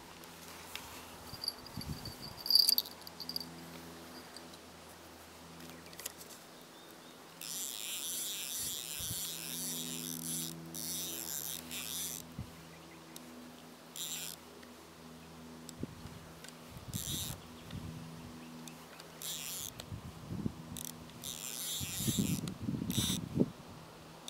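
High-pitched insect buzzing that starts abruptly, runs for several seconds, then comes back in shorter bursts of a second or less. There is a sharp knock about two and a half seconds in.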